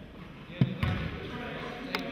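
Basketball bouncing on a hardwood gym floor: two thuds about a quarter second apart, a little over half a second in, amid voices.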